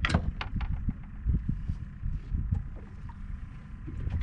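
Small waves slapping the hull of a small fishing skiff: a run of irregular low thumps, with a few short sharp clicks from things being handled in the boat.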